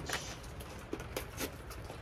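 Faint handling sounds from a seed packet: several soft clicks and crinkles scattered over a low steady hiss.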